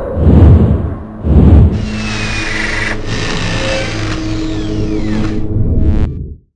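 Logo outro sting of music and machine sound effects: two heavy low hits about a second apart, then a steady layered mechanical drone with falling whistling glides.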